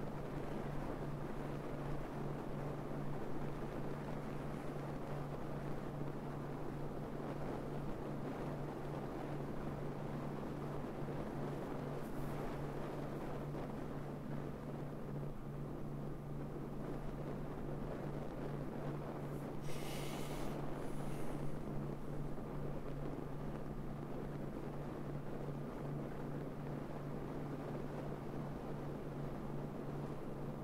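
Wind buffeting a camera mounted on the roof of a moving car, a steady rushing noise over a constant low hum of the car and road. About two thirds of the way through there is a brief louder hiss.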